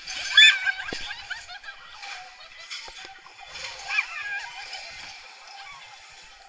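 Roller coaster riders laughing and squealing, with a loud shriek just after the start and another about four seconds in.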